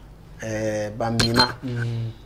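A brief metallic clink, a few quick sharp ticks with a short ring, about a second and a quarter in, over a man's drawn-out voice sounds.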